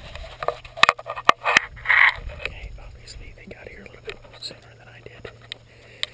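Handling noise on a close-mounted action camera: a run of sharp clicks, knocks and scrapes, thickest in the first two seconds and then sparser, over a steady low hum, with a breathy whisper-like sound around two seconds in.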